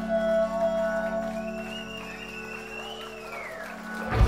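Rock band playing live in a quiet, held passage: a sustained keyboard chord under a high, wavering lead line that rises about a second in and glides back down near the end.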